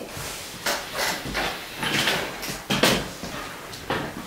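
Rustling and bumping from someone moving right next to the microphone, with two dull thumps about a second and a half apart.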